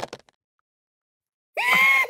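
Silence, then about one and a half seconds in a man lets out a loud, high-pitched scream of fright.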